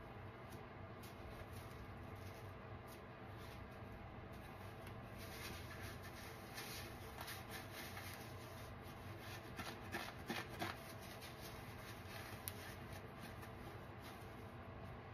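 An old kitchen sponge torn apart by hand, its foam and scrubber layer ripping with a faint crackle, with a short run of louder tears about two-thirds of the way through.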